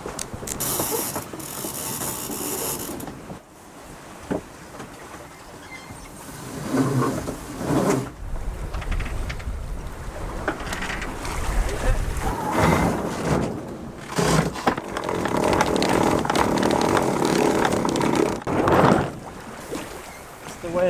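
Wind and sea noise aboard a sailboat under way, with gusts buffeting the microphone and occasional knocks and rustles of deck gear as the whisker pole is moved across for a gybe.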